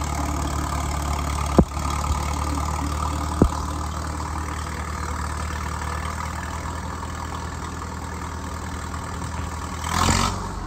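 The engine of an old crawler loader-backhoe (bulldozer) runs steadily at low speed with a deep, even drone while the machine is being set into place. Two sharp knocks come about one and a half and three and a half seconds in.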